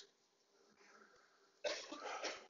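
Near silence, then a single short cough about one and a half seconds in.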